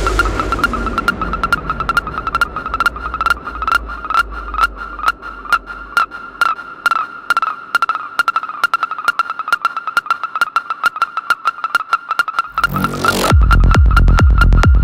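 Progressive psytrance breakdown: a steady high synth tone pulsing with fast, even ticks over a low bass drone that fades out about halfway. Near the end a noise sweep rises and the full kick drum and bass beat drops back in.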